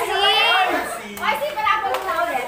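A group of people shouting and squealing excitedly, with one high, wavering shout carrying over the rest for about the first half-second, then a brief lull and more overlapping shouts.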